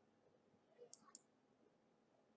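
Near silence with a few faint computer mouse clicks about a second in.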